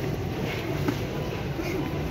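Large-store background noise: a steady low rumble with faint, indistinct voices and small handling clicks.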